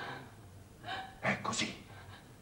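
A person's voice: a sharp gasp, then a brief unclear bit of speech about a second in.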